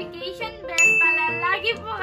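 Background music with a bright ding sound effect about a second in, its single clear tone ringing for about half a second before fading into the music.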